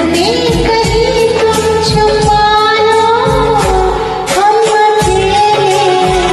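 A woman singing a Hindi film song over a karaoke backing track, with long held notes that glide between pitches and a short break about four seconds in.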